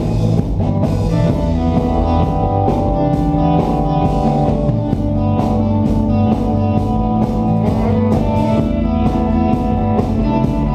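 Live rock band playing loud and steady: distorted electric guitars and bass guitar over a drum kit keeping a regular beat.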